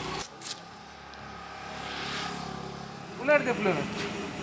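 Steady vehicle hum, with a rushing sound that swells to its loudest about two seconds in and then fades, as of a vehicle going by. A person's voice is heard briefly near the end.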